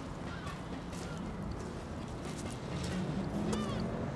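Footsteps on the gravel ballast of a railway track, a steady walking pace over a low steady hum, with a few short high squeals near the end.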